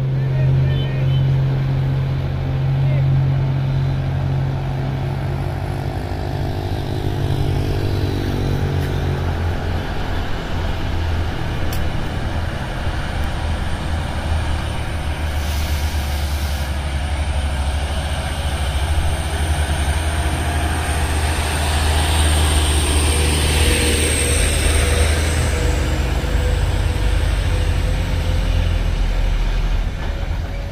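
Diesel truck engines labouring up a hill as heavy trucks pass, the deep engine note dropping lower about a third of the way in. About two-thirds of the way through, a hiss swells and fades.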